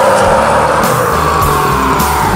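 Heavy metal song playing loud: a full band with one long high note held, sinking slowly in pitch, over shifting low bass notes.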